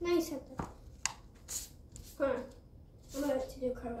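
A young girl's voice making short, breathy exclamations, with a couple of light thumps from her cartwheels.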